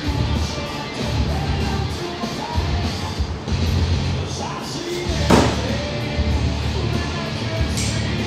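Rock music with singing plays throughout. About five seconds in there is one sharp bang, the loudest thing heard.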